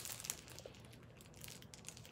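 Faint crinkling of the clear plastic wrappers on a roll of makeup brushes as it is handled and lifted up, with a sharper crackle at the start.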